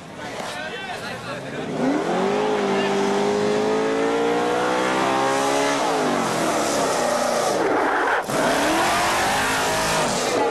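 Race car engine revved hard and held at a steady high pitch, then accelerating away with its pitch rising and falling and a sudden break at about eight seconds, like a gear change. Tyre squeal may be mixed in.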